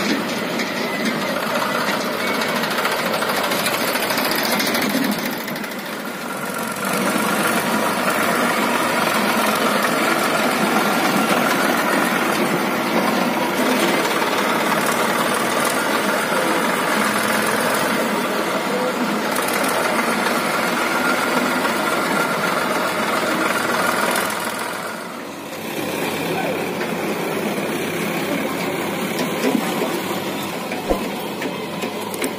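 HMT tractor's diesel engine running steadily. The sound dips briefly about six seconds in and again about 25 seconds in.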